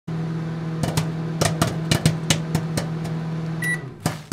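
Microwave oven running with a steady hum and irregular sharp pops, then a single beep near the end as it shuts off.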